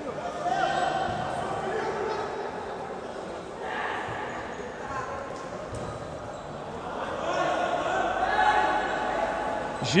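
Players shouting to each other on a futsal court, their voices echoing in the sports hall, with a few thuds of the ball being kicked. The shouts come in two spells, near the start and again near the end.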